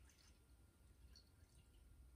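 Near silence, with only a faint trickle of brandy being poured from a bottle into a glass tumbler and a few faint drips.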